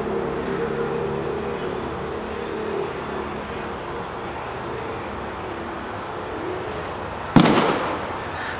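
A pitched baseball striking with one sharp, loud pop near the end, ringing briefly in the enclosed room. A steady background noise runs under it.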